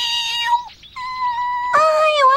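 A cartoon bird-like spirit beast giving two long wailing cries, each about a second long at a steady pitch, a sign that it is in pain.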